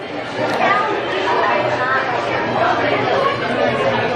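Indistinct overlapping conversation and chatter of diners in a restaurant dining room.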